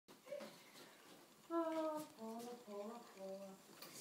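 A person humming a short wordless tune of four held notes that step downward in pitch, starting about one and a half seconds in.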